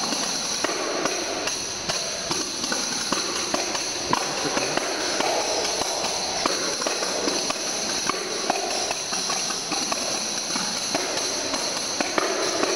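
Three tambourines played together as a percussion ensemble: a continuous jingle shimmer broken by frequent sharp taps and strikes on the heads.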